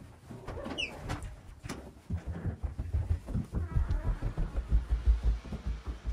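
Footsteps climbing a staircase: a quick run of low thuds from about two seconds in. A brief high squeak comes about a second in.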